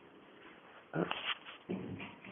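A dog making two short sounds, about a second in and again near the end, over a quiet room.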